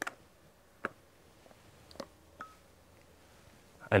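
TOZ-34E over-and-under shotgun being taken down: a few separate sharp metallic clicks from the action as the gun comes apart into two pieces.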